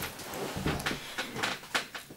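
A cat smacking and chewing as it eats wet food: a quick, irregular run of small clicks and smacks.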